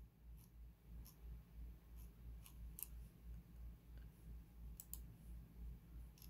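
Near silence with a low steady hum and a few faint, scattered clicks from a computer being used to scroll and click through a web page.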